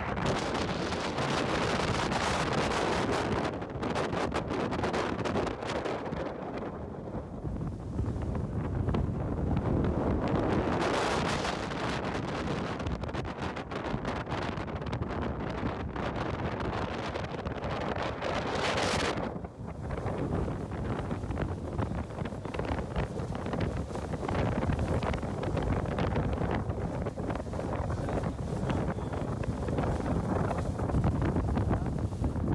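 Wind buffeting the microphone on a moving boat, over the rush of water along the hull and wake. The gusts swell and fade, with a brief lull about nineteen seconds in.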